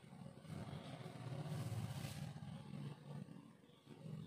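Faint scratching of a marker on a whiteboard and movement at the board, over a low steady room hum.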